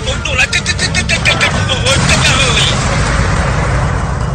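Film sound effects of a blast: a dense rush of noise with rapid crackles over a low rumble, fading away near the end, with voices crying out in the first seconds.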